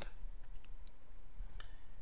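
A few faint, short clicks over a steady low hum.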